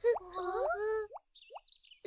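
Cartoon sound effect: a plop with quick rising whistle-like glides over the tail of the background music in the first second, then a faint high twinkle that dies away.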